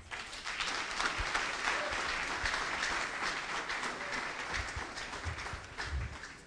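Audience applauding, many hands clapping together, dying down near the end.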